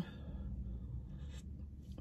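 Faint sips from a paper coffee cup through its lid, with a few soft scratchy sounds, over a steady low hum inside a car.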